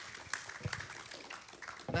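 Audience applauding, with many hands clapping at once.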